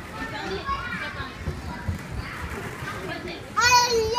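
Children playing and chattering, with a child's loud, high-pitched squeal starting near the end.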